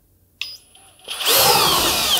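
Flex PD 2G 18.0-EC cordless drill driver in turbo mode, starting about half a second in and driving against a torque test rig. Its motor whine falls in pitch as the load builds toward stall.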